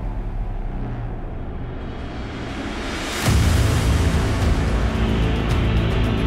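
Cinematic soundtrack music with sustained low tones. About three seconds in, a swell leads into a louder section with heavy bass and a quick ticking beat.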